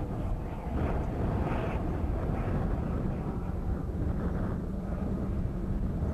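A vehicle engine running, a steady low rumble.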